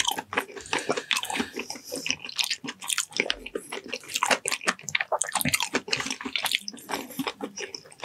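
Close-miked wet chewing and biting of soft, gelatinous braised ox feet, with dense, irregular sticky smacks and clicks throughout.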